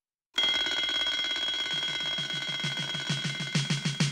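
Twin-bell mechanical alarm clock ringing: a rapid, steady metallic rattle of the clapper on the bells that starts suddenly about a third of a second in and keeps going.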